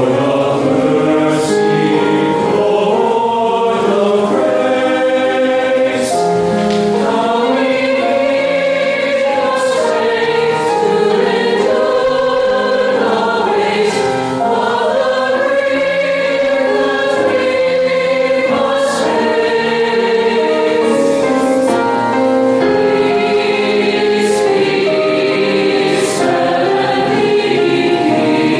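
Mixed choir of young singers singing a slow piece in long, held notes.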